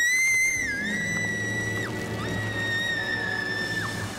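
Two long, high-pitched screams, one after the other, each held at nearly one pitch for almost two seconds, as girls fall down a hole into a cave.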